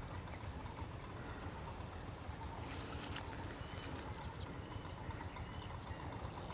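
Faint rural outdoor ambience: a low steady rumble, a thin steady high-pitched whine, and a few faint short chirps around three to four and a half seconds in.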